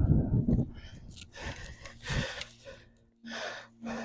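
Hard breathing of a climber working a steep overhanging route: short, forceful exhalations about once a second, some with a faint voiced sigh. A gust of wind rumbles on the microphone at the start.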